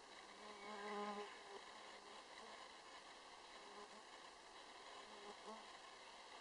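A flying insect buzzing close by, loudest from about half a second to just over a second in, then coming back fainter and briefly a few more times, over a faint steady hiss.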